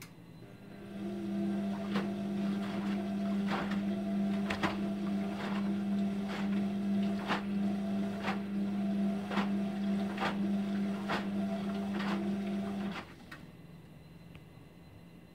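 Indesit IWD71451 washing machine's motor starting up, turning the drum with a steady hum and stopping again, a wash-cycle tumble on the Cottons 60 programme. Sharp knocks come about once a second while the load tumbles.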